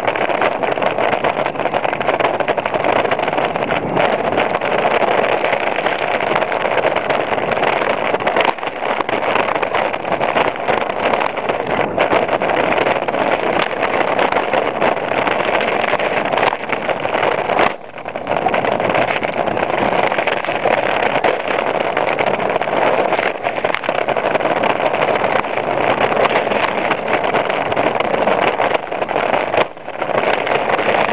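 Wind rushing over a bike-mounted camera microphone, mixed with the rattle and clatter of a Norco downhill mountain bike riding fast over a rough forest trail. The noise briefly drops about two-thirds of the way in.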